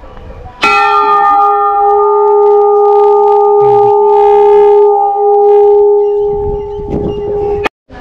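Large hanging metal temple bell struck once, ringing on with a steady, loud hum of two main tones for about seven seconds. The ring cuts off suddenly near the end.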